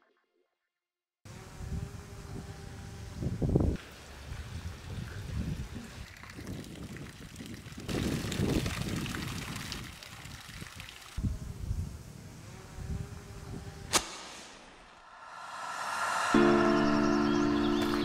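After a second of silence, water splashes steadily as thin fountain jets arc into a swimming pool, with occasional low rumbles. A single sharp click comes late on, and music fades in near the end.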